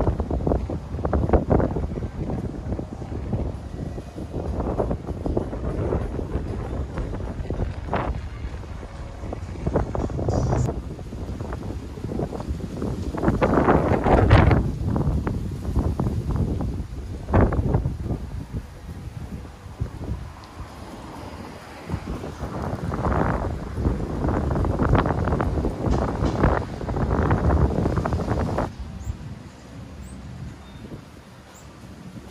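Gusty wind buffeting the microphone, rising and falling in irregular gusts with the strongest about halfway through: the winds ahead of an approaching typhoon.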